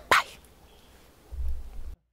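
A single short, sharp yelp-like call just after the start, falling slightly in pitch. A low rumble follows for about half a second near the end, then the sound cuts off.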